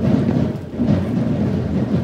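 Parade drums beating deep, muddy thuds, swelling about once a second.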